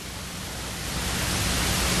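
Steady hiss of room and recording noise, with no distinct event, growing gradually louder through the pause.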